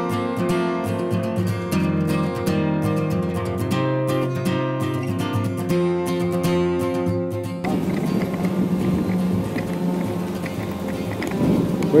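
Background music led by a strummed acoustic guitar, cut off suddenly about two-thirds of the way in. It gives way to the noisy hiss of an outdoor street.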